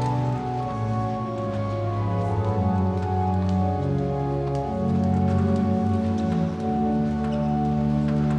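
Church organ playing slow, sustained chords that change every second or two. Under it there is a light steady rustle with scattered small clicks.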